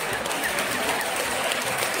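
Theatre audience applauding, an even patter of clapping mixed with crowd noise and scattered voices.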